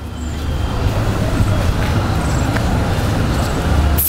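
Road traffic close by: a vehicle running near the microphone, a loud steady low rumble with road noise.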